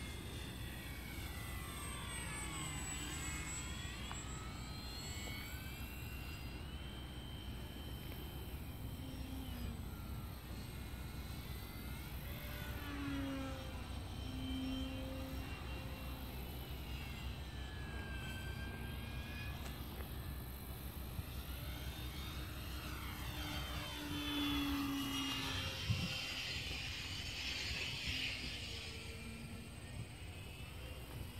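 Electric motor and propeller of a radio-controlled E-flite P-51 Mustang model plane in flight: a whine whose pitch sweeps down and back up each time it passes, three times, the last pass loudest with a rush of air noise.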